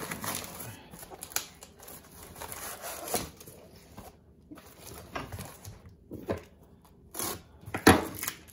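Cardboard shipping box being torn open and handled: rustling and crinkling with scattered light knocks and clicks as packing is pulled out.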